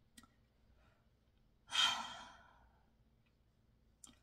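A woman sighing once: a breathy exhale about two seconds in that is loudest at its start and fades out within about half a second.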